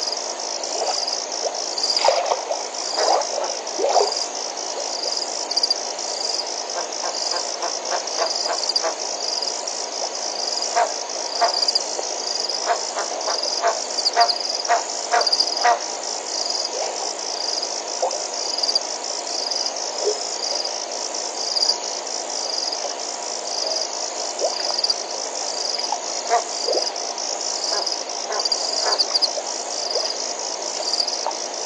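Frogs calling in short repeated notes, busiest about two seconds in and again around the middle, over a steady, high, pulsing trill of insects.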